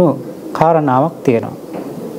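A man's voice speaking Sinhala at a slow, measured pace, in short phrases with pauses between them: the delivery of a spoken sermon.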